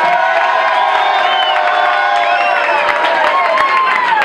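Concert crowd cheering, whooping and clapping, with many voices holding long shouts at once: an ovation that swells on cue rather than stopping.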